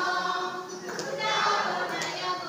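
A mixed choir of men and women singing together in chorus, the voices held on sustained notes.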